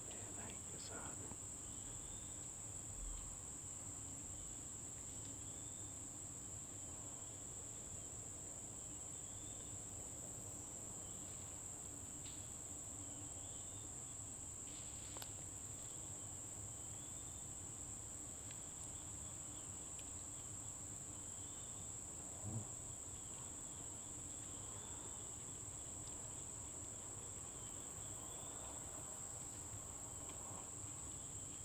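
Insects calling in the woods: a steady, high-pitched continuous trill, with fainter short chirps from a second insect repeating about once a second. A single soft knock comes about three-quarters of the way through.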